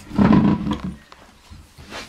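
A toddler's loud, rough, growly shout lasting about a second, then quieter.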